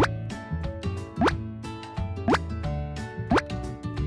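Cartoon 'bloop' sound effects, four quick rising-pitch plops about a second apart, over upbeat children's background music with a steady beat.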